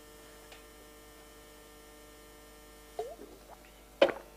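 Faint, steady electrical mains hum, with a brief faint sound about three seconds in.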